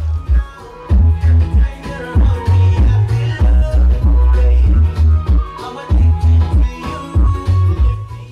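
Music playing loudly through the BMW X5's Harman Kardon sound system, heard inside the cabin, with heavy, repeated deep bass.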